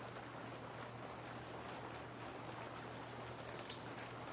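Faint steady hiss with a low steady hum underneath: quiet room tone. A faint brief rustle comes near the end.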